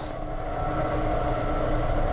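A steady mechanical hum with a few held tones, growing slowly louder.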